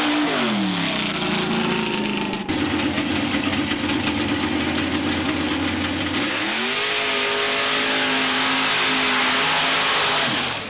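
Mud-racing vehicle engines: one engine's revs drop away, then after a sudden break about two and a half seconds in another engine runs steadily, revs up about six and a half seconds in and holds at high revs.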